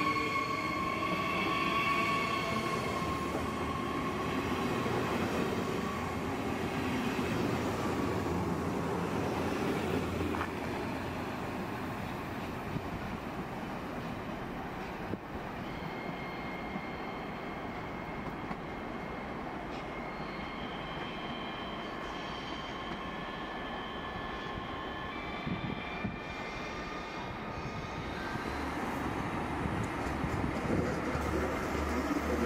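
Rhein-Ruhr-Express Siemens Desiro HC electric multiple units. Near the start a steady electric whine from one train's traction drive fades into a rolling rumble as it moves along the platform. Later a quieter rolling sound comes from another unit approaching, with fainter whining tones.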